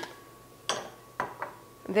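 A few light clinks of kitchenware on a counter: one sharp clink with a brief ring about two-thirds of a second in, then two softer ones just after a second.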